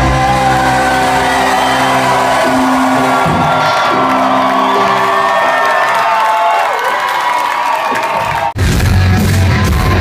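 Live rock band played loud through a venue PA, recorded on a phone, with a crowd whooping and cheering. The bass drops away about two-thirds of the way in, the sound cuts out sharply for an instant, then the full band comes back heavy.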